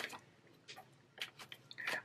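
Tarot cards being handled: a few faint, scattered clicks and rustles of the deck as a card is drawn out and laid on the spread.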